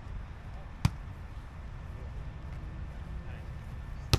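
A volleyball struck once during a rally: a single sharp smack about a second in, over a low steady rumble.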